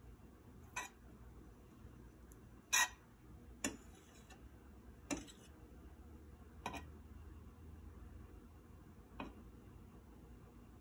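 Metal table knife tapping against a nonstick frying pan while dabbing margarine into it: six sharp clicks at uneven gaps, the loudest about three seconds in, some with a short ring.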